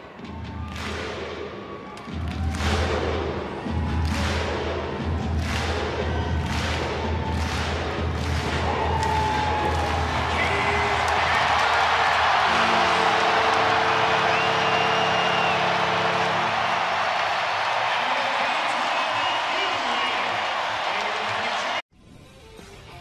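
Hockey arena crowd clapping in unison to a steady booming drum beat, about one beat every 0.7 seconds. After about ten seconds this gives way to a loud, sustained roar of cheering with music over it, cut off suddenly near the end.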